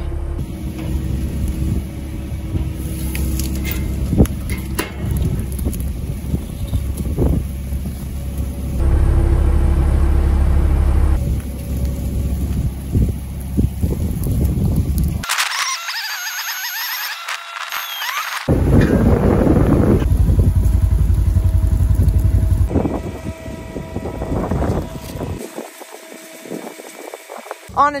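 Telehandler's diesel engine running under load while pulling a stuck centre-pivot tower wheel out of a deep rut by chain, its low rumble growing louder for a few seconds at a time. For about three seconds midway the rumble drops out and only higher-pitched noise is heard.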